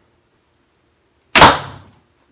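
A 95 lb carbon-laminated Korean traditional bow shot by hand: one sharp crack of the bowstring releasing an arrow, about one and a half seconds in, dying away within half a second.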